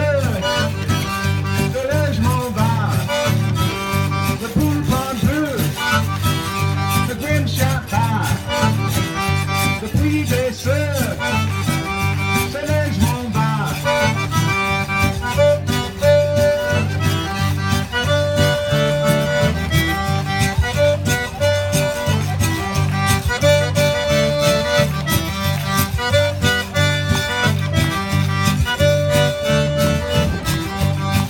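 Zydeco band playing live, with a steady dance beat under sustained melody lines.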